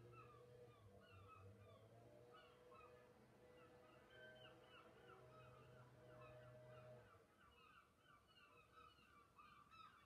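Faint bird calls: many short falling notes, several a second, overlapping in a chorus. A steady low hum runs underneath and cuts off about seven seconds in.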